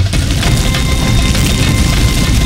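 Dramatic background score over a loud, steady low rumble and dense crackling, like something crashing through dry wood and undergrowth.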